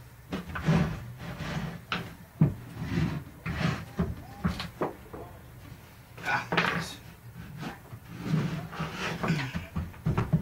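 Rummaging through workbench drawers and shelves for a small hand tool: a run of irregular knocks, clicks and clatters as drawers are opened and shut and things are shifted about.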